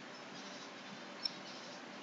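Faint steady room hiss and microphone noise, with a single small sharp click a little over a second in.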